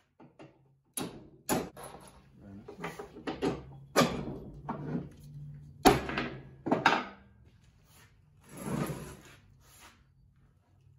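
Hammer tapping bolts down into holes in a wooden bed deck: about five sharp knocks, the loudest about six seconds in, with handling clatter between them and a longer scraping rustle near the end.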